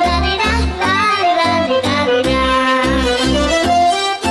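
Romanian folk music accompaniment playing loudly, a pitched melody line over a steady pulsing bass beat.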